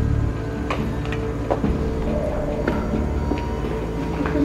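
Low, sustained background music drone with a few short, sharp taps scattered through it.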